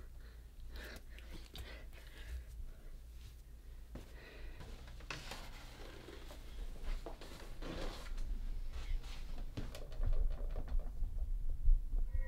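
Horror-film sound design: a low rumbling drone under scattered soft knocks, rustles and breathy sounds, swelling louder over the last few seconds.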